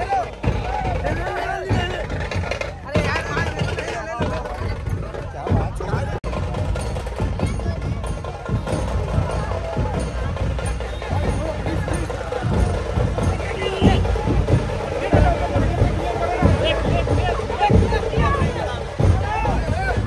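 A crowd of fans shouting and chattering all at once around a car, over background music with a drum beat; the crowd grows busier in the second half.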